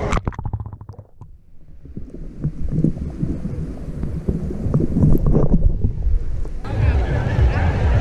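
Camera microphone plunging into seawater: a splash, a quick run of bubbly clicks, then muffled underwater sloshing and rumble with the high sounds cut off. About six and a half seconds in it breaks the surface and open-air water and beach sounds return suddenly.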